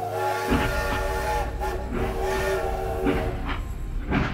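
Two long blasts of a chord-like, multi-tone whistle over a steady low rumble that sets in about half a second in, with background music.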